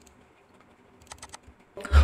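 A brief run of about five computer keyboard clicks a little after a second in, the keystrokes of text being pasted into a web form field.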